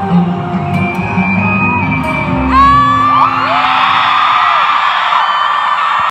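Live pop concert music with its low beat, closing on a heavy low hit about two and a half seconds in. A large crowd of fans then screams and cheers in high, wavering voices until the sound cuts off abruptly.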